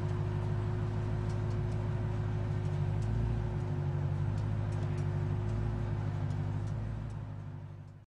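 A steady, low engine drone with an unchanging pitch, fading out over the last second or so.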